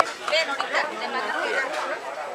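Overlapping chatter of children and adults talking at once, with several high children's voices.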